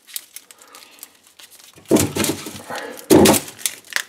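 Dry onion skins rustling and crackling as onions are handled and picked out of a plastic fridge drawer: faint clicks at first, then two louder bursts of rustling about two and three seconds in.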